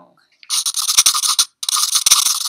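Recorded pencil-scratching sound effect, a pencil writing on paper, in two scribbling strokes of about a second each, the first starting about half a second in.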